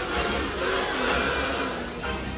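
A large group of children humming a tune through plastic kazoos together, a dense, steady buzzing.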